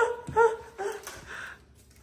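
A dog giving short, high-pitched whining yips, three in the first second and each rising and falling in pitch, then falling quiet.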